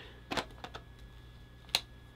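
A few faint, short clicks and knocks of a camera and lens being handled on a chest harness, the sharpest near the end.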